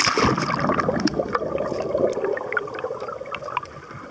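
Seawater splashing hard around the camera as it plunges under the surface, then underwater churning and bubbling that eases off over the next few seconds, with scattered sharp clicks.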